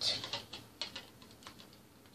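Plastic toy bricks being handled: several light, irregular clicks, mostly in the first second and fading.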